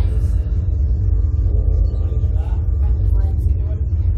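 Steady low rumble of air buffeting the ride's onboard camera microphone, with faint voices in the background.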